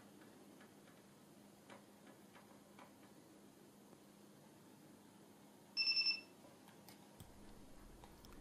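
Panasonic Lumix FZ330's focus-confirmation beep, a very brief high double beep about six seconds in, which sounds when the half-pressed shutter gets autofocus to lock. A few faint ticks come before it.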